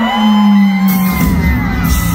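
Live country band music in a large concert hall: a long held note slides down in pitch, then the full band with drums and bass comes in about a second in, with the crowd whooping.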